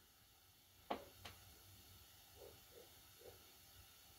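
Near silence: room tone, with two faint clicks about a second in.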